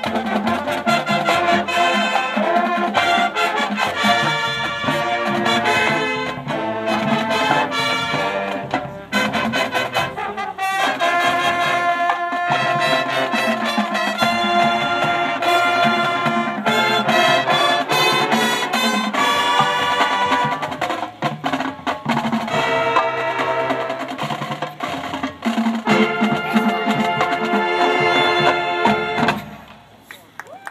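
Marching band playing: a loud brass section of trumpets and trombones with drums and percussion, the full ensemble going steadily; the music stops abruptly near the end.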